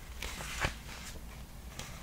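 Paper pages of a picture book being turned by hand: a soft rustle with a light tap about two-thirds of a second in, then faint handling noises.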